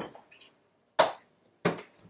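Two sharp knocks about two-thirds of a second apart, after the tail of a voice at the start.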